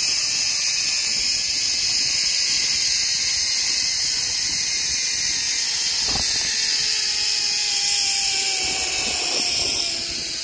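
Zipline trolley pulleys running along the steel cable: a steady high whirring hiss, with a whine that falls in pitch over the last few seconds as the trolley slows. A single knock about six seconds in.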